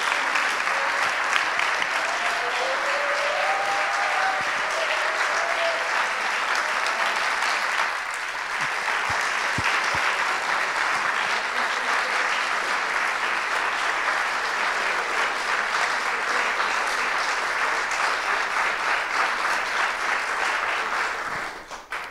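An audience clapping steadily and at length, the applause fading away near the end.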